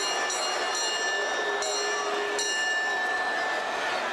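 Arena crowd noise after a wrestler's ring introduction, a steady roar of many voices. Shrill steady high tones cut in and out over it several times.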